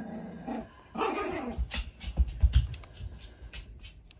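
A dog vocalising in two short calls, the second falling in pitch about a second in. A few dull low thumps follow about two seconds in.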